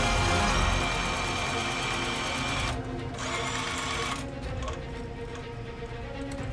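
Stitch Master industrial sewing machine stitching at a rapid steady pace. It pauses briefly just before the 3-second mark, runs again, then stops about 4 seconds in.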